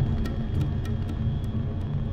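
Film soundtrack: a low rumbling drone with steady tones, broken by irregular sharp clicks about three times a second.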